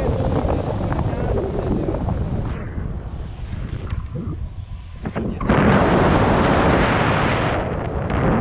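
Wind buffeting the microphone of a selfie-stick camera in paraglider flight, a steady low rumble that swells into a louder rushing gust about five and a half seconds in and eases just before the end.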